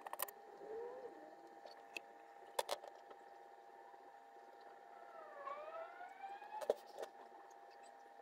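Quiet handling at a soldering workbench: a few sharp clicks and taps over a faint steady hum. In the second half a faint wailing tone dips and then rises in pitch.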